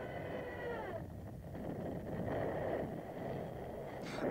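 Faint whistle with several overtones, held steady and then falling in pitch during the first second, followed by a steady low rushing noise on an archival war-film soundtrack.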